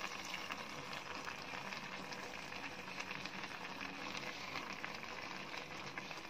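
Faint steady bubbling and spitting of a pot of pineapple and coconut curry simmering on the stove, with soft scrapes of a wooden spoon as curd is stirred in.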